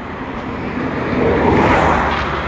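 A vehicle passing on the highway: road and engine noise swells to a peak near the end, then begins to fade, over a steady low hum.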